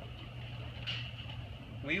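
A pause in a man's talk, filled by a steady low hum of background noise. His voice comes back right at the end.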